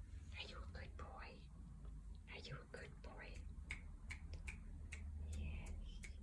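Soft whispering, with a run of light clicks in the second half.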